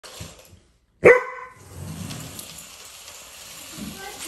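A dog barks once, loud and sharp, about a second in, and the bark dies away within half a second.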